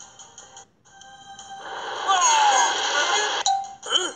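Background music with steady held tones from a children's story app. From about a second and a half in, a loud, noisy swelling sound effect plays, then cuts off shortly before the end.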